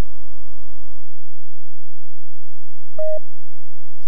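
A faint low hum that stops about a second in, then a single short electronic beep tone about three seconds in.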